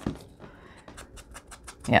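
Faint soft, rapid tapping and light paper handling as a foam ink-blending tool is dabbed onto the edge of a paper notebook. A short spoken word comes near the end.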